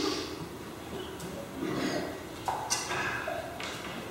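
Quiet, indistinct voices away from the microphone, with a few light taps.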